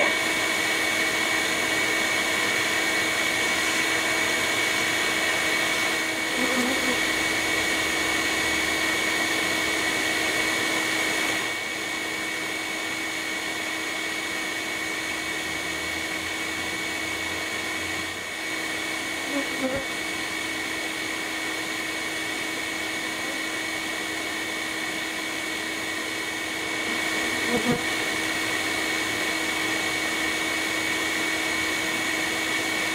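Bee vacuum running steadily with its hose nozzle held against a honey bee comb, sucking the bees off. The motor note drops a little about a third of the way through and rises slightly near the end.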